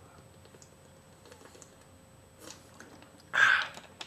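Someone drinking water from a plastic bottle, with faint swallowing clicks. About three and a half seconds in, a short loud rush of breath comes as the drinking stops.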